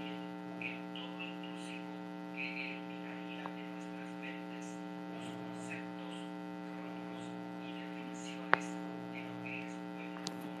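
Steady electrical mains hum, a low buzz with many overtones, with one sharp click about eight and a half seconds in.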